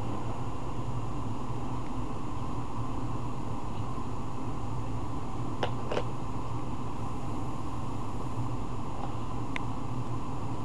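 Steady low room hum, like a fan or air conditioner, with a few light clicks: two close together about halfway through and one near the end, from a hand tool against a plastic roller-skate wheel.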